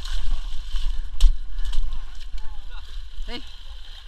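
Muddy water sloshing and splashing as obstacle-race runners wade through a mud pit, over a constant low rumble, with one sharp click about a second in.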